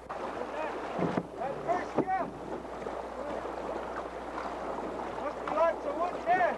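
Wind on the microphone and water washing around a small aluminium boat, with no motor running. A few short rising-and-falling calls are heard about a second in, around two seconds in, and again near the end.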